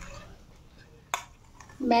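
Cream being scooped from a bowl into a steel pan of milk: quiet handling, then a single sharp clink of a metal spoon against a steel vessel about a second in.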